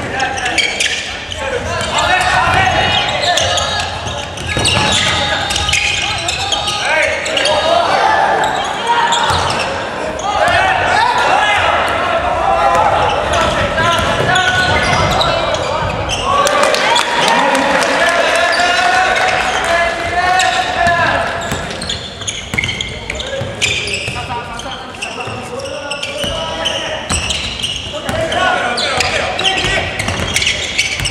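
A basketball bouncing on a hardwood gym floor amid continual shouting and cheering voices that echo in the large hall.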